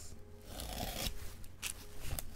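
Utility knife blade slitting the plastic shrink wrap on a sealed trading card box: a faint scratchy cut with a few small clicks in the second half.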